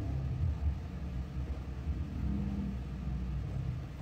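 A steady low rumble with a faint hum in it.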